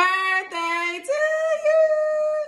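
A woman singing without accompaniment: two shorter notes, then a higher note held steadily from about a second in.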